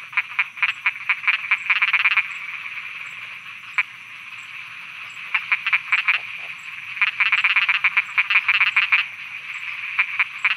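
A chorus of frogs calling in bouts of rapid, pulsed croaks. There is a lull from about two to five seconds in, broken by a single call, and the densest bout comes near the end.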